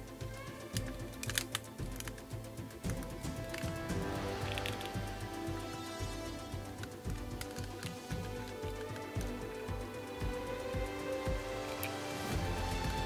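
Background music, with irregular small clicks and taps from the parts of a diecast 1/6-scale Hot Toys figure being handled and worked at the joints.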